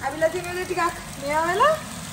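A woman's voice speaking, with a long upward glide in pitch about three quarters of the way through.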